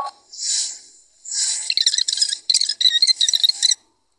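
Table knife spreading butter on a slice of bread: a short scrape, then about two and a half seconds of rapid rasping strokes of the blade across the slice.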